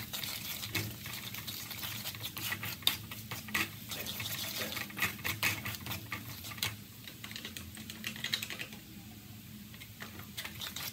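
Wooden spatula scraping and tapping against a metal frying pan in quick, irregular clicks as minced garlic is stirred in a little oil, with a light sizzle underneath. The clicks thin out in the last few seconds.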